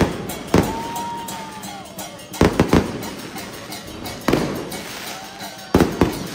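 Loud sharp bangs, five of them at uneven intervals, each followed by a ringing decay. A thin steady tone lasts about a second after the first bang.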